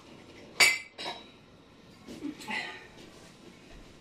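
Dishes clinking: a bowl set down with one sharp, ringing clink a little over half a second in, then a smaller knock just after a second and a few fainter knocks about two seconds in.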